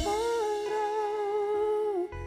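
Live band music: a drum hit right at the start, then a singer holds one long note with a slight waver for about two seconds, with no drumming under it.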